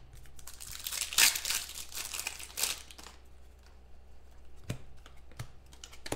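Plastic foil trading-card pack wrapper crinkling and tearing as a pack is opened by hand, in rustly bursts that are loudest about a second in and die down after the halfway point; two short taps near the end.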